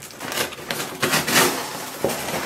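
A cardboard shipping box being cut open with a knife and its flaps and packing handled: scraping and rustling, loudest about half a second in and again around a second and a half in.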